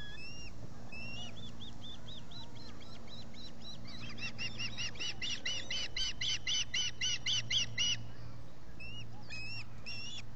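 Ospreys calling: a long run of short, high, arched chirps, about four a second, growing louder through the middle and then breaking off abruptly, with a few separate chirps near the end.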